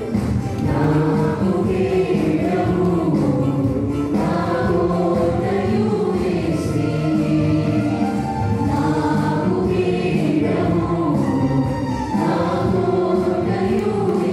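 A mixed group of young women and men singing a Telugu Christian song in unison through microphones and a sound system, with keyboard accompaniment.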